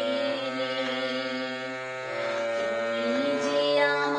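A woman singing a Bengali song over steady instrumental backing with long held notes.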